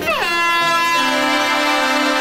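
Truck air horn sounding one long, steady blast that begins just after a short falling glide, over background music.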